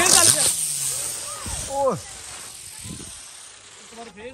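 A Diwali firecracker fizzing as it throws out sparks, its hiss fading away over the first second and a half.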